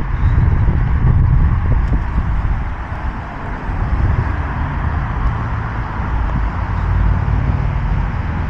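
Steady road traffic from a busy road, heard outdoors with a heavy low rumble under it.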